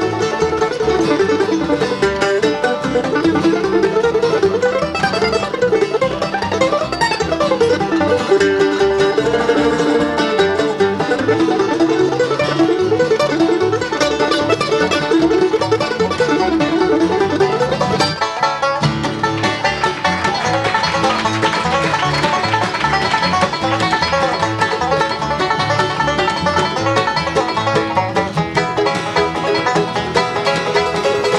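Live acoustic bluegrass band playing an up-tempo tune: five-string banjo leading over mandolin, acoustic guitar and slapped upright bass. The playing shifts to a different texture about eighteen seconds in.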